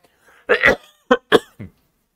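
A man coughing and clearing his throat: a few short coughs in quick succession, starting about half a second in.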